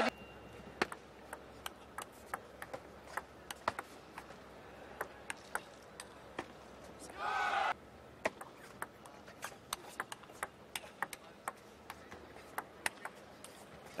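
Table tennis ball clicking off the rackets and the table in rallies, one sharp tick at a time at an uneven pace, over a low murmur of hall ambience. A voice gives a brief shout about seven seconds in.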